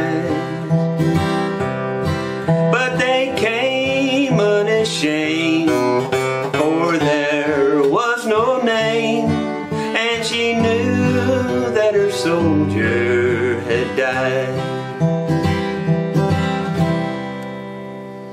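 A man singing a slow country ballad while playing a restored Gibson SJ-200 jumbo acoustic guitar. Near the end the voice stops and the guitar is left to ring and fade.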